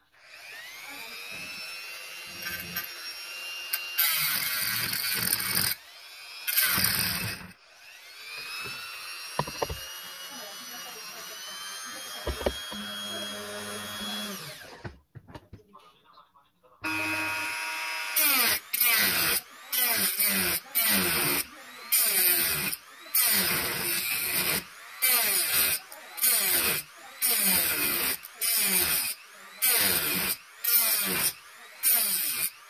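Mini wood lathe's small motor spinning up, running with a steady whine as the honey dipper turns, with two louder stretches early on, then winding down about halfway through. From about two-thirds of the way in, a handheld power tool runs in many short, evenly spaced bursts.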